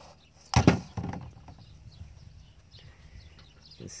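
A rock (an agate) dropped into a cut-off plastic milk jug of water and muriatic acid, landing with one sharp knock about half a second in.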